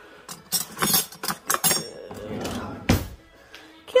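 Metal silverware clinking and rattling as pieces are taken out of a cutlery drawer: a quick run of sharp clinks in the first two seconds, some ringing briefly, then one louder clack about three seconds in.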